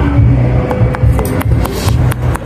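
Background music with a steady bass beat and sharp percussion clicks.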